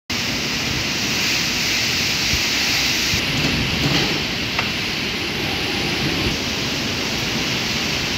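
Storm with heavy rain and strong wind, heard as a steady, dense rush of noise.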